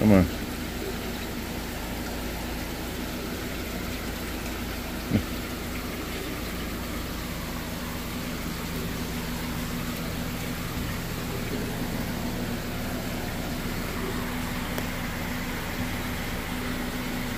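Steady hum and water-rushing hiss of aquarium pumps and filtration running, with one brief sound about five seconds in.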